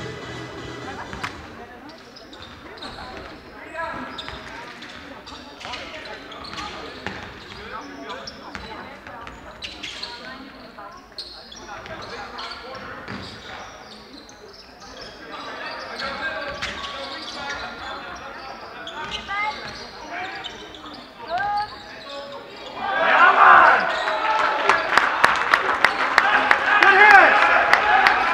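Basketball game in a sports hall: the ball bouncing on the court floor again and again, with scattered shouts from players and spectators echoing in the hall. About three quarters of the way through, the voices swell into loud crowd shouting as play breaks fast up the court.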